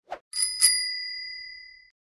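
A bicycle bell rung twice in quick succession, ding-ding. Its bright tone rings on and fades out over about a second and a half.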